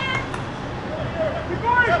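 Distant shouted calls across an outdoor soccer pitch: short, rising-and-falling voices, with a louder burst of calls near the end.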